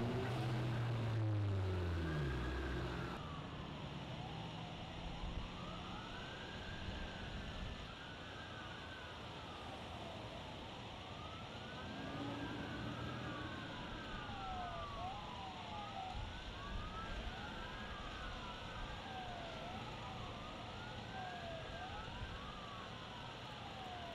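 Police car sirens wailing, two or more sweeping up and down at once and overlapping, over steady traffic noise. A passing car's engine is loud during the first few seconds.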